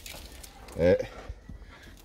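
A man's short single-syllable voiced exclamation about a second in, over faint rustling and clicks as the wooden hive lid and its cloth insulation are handled.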